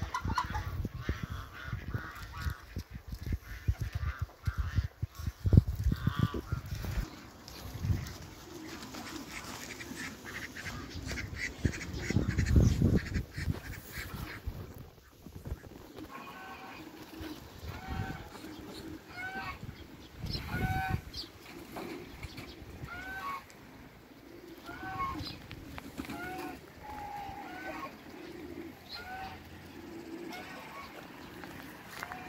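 Egyptian geese honking, short repeated calls about once a second through the second half. Low rumbling and thumps on the microphone fill the first half.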